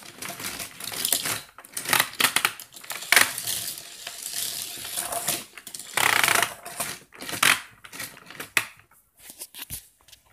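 Small plastic Minis toy trains clattering down a plastic spiral track: a dense, irregular run of clicks and rattles, with louder bursts about two seconds in and again around six to seven seconds, thinning out near the end.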